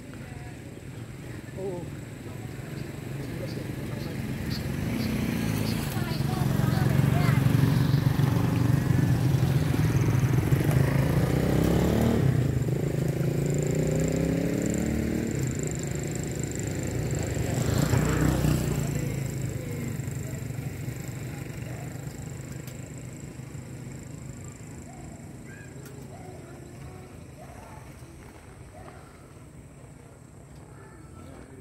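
A motor vehicle engine passing by: it grows louder over several seconds, drops in pitch as it goes past, swells once more and then fades away.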